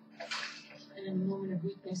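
A man's breathy exhale, then a low wordless murmur in his voice.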